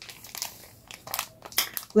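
Soft, irregular crinkling and rustling as a spiral-bound notebook and its wrapping are handled, in a few short scattered bursts.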